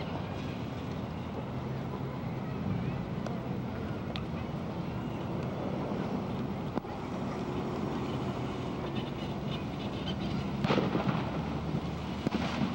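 Outdoor background on an old camcorder microphone: a steady low rumble and hiss with wind on the microphone, and a louder burst of noise about three-quarters of the way through.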